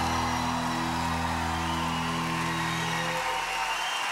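A band holds its final sustained chord at the end of a pop ballad while the audience cheers and applauds. The chord stops about three seconds in, leaving the crowd noise.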